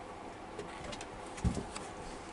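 Tarot cards handled and one laid down on a cloth-covered table: faint rustles and clicks, with a soft low thump about one and a half seconds in.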